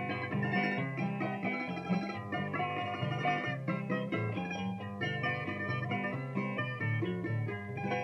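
Instrumental interlude of Cuban punto guajiro between sung décimas: guitar and other plucked strings play the tune over a stepping bass line, with no voice.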